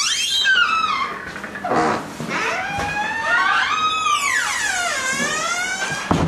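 A door's hinges creaking as the door is swung slowly, a long squeal that slides up and down in pitch several times.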